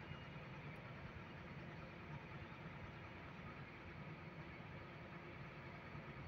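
Faint, steady low rumble of a vehicle's engine and road noise, heard from inside the cab while driving.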